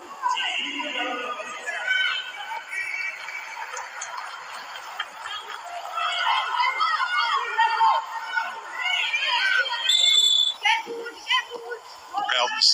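Several voices calling out and chattering, indistinct and overlapping, with no single clear talker.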